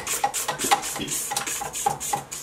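Silicone spatula scraping down the inside of a stand mixer bowl and its beater through the butter-and-sugar batter, a run of short, repeated scrapes.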